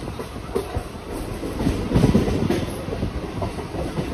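Mumbai suburban local train running on the rails, heard from inside the coach at the open doorway: a steady rumble with wheels clattering over rail joints, getting louder for a moment about halfway through.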